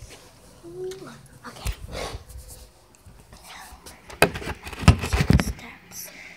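A dog right next to the phone's microphone, with a short rising whimper about a second in, and loud knocks and rubbing from the phone being handled, loudest between about four and five and a half seconds in.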